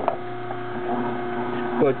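Omega masticating juicer's motor running with a steady hum as endive is fed back through it for a second pressing. A sharp click sounds right at the start.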